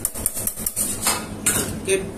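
Metal utensils clinking and scraping against a stainless steel mixing bowl as ingredients are added: a quick run of small clicks, then a few sharper clinks.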